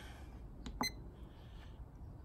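Keypad of a myenergi Zappi EV charger being pressed: two quick clicks a little under a second in, the second with a short electronic beep, over low room noise.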